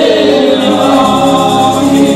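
A woman leading a gospel song into a microphone, with a small group of backing singers joining in on long held notes.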